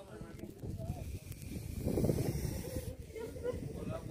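A cobra hissing: one breathy hiss starting about a second in and lasting nearly two seconds, with people's voices in the background.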